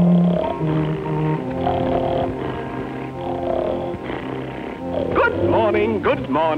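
Cartoon orchestral score playing under a sleeping cartoon dog's snoring, which comes in slow, regular breaths about every second and a half. Near the end a sliding, voice-like sound comes in.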